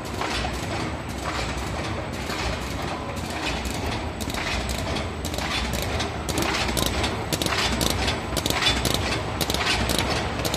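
A QH-9905 hot-melt-glue carton erecting machine running: a fast, continuous clatter of clicking and knocking mechanisms over a steady low hum. The clicks get louder and more crowded about halfway through.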